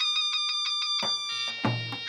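Egyptian mizmar (double-reed folk shawm) holding one long, steady high note. Drum strokes come in about halfway, with a deep drum beat near the end.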